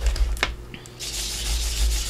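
Round ink blending tool rubbed over an embossed paper envelope, working archival ink into the raised texture. A single short click comes about half a second in, and the steady scratchy rubbing starts about a second in.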